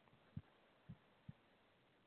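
Near silence: room tone in a pause of speech, with three brief faint low thumps within the first second and a half.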